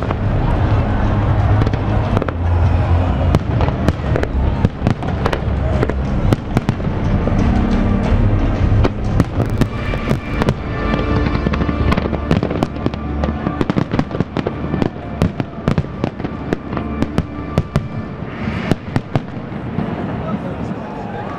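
A fireworks display: a rapid run of bangs and crackling bursts, thickest in the second half, over music with sustained low notes that grows fainter toward the end.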